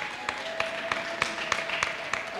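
Scattered clapping from an audience: separate, irregular claps rather than a full round of applause, with a faint steady tone held underneath.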